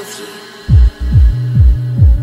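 Dance track: a held synth chord fades out, then a four-on-the-floor kick drum with a steady synth bass comes in about two thirds of a second in, about two kicks a second.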